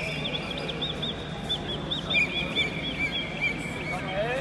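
Small birds chirping rapidly, a run of short arched high notes several times a second, over a steady low hum.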